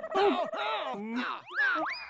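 Wordless cartoon-character vocal sounds, followed in the second half by quick sweeping sound-effect glides rising and falling in pitch.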